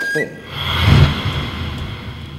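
Film soundtrack music: a held high flute-like note ends just after the start, then a low rumbling swell with a hiss rises, peaks about a second in and fades away.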